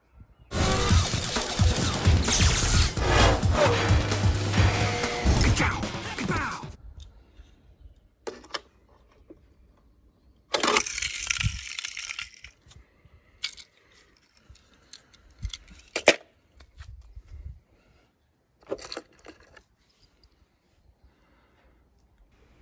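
Several seconds of background music, then quiet broken by scattered sharp clicks and knocks of a small die-cast toy car against stone paving. A short scraping burst comes about halfway through, and the loudest sharp crack comes about two-thirds of the way in.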